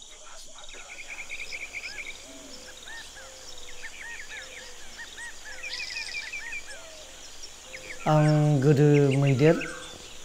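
Natural forest-edge ambience: many birds calling with repeated short chirps over a steady high insect drone. Near the end a man's voice speaks loudly for about a second and a half, the loudest sound.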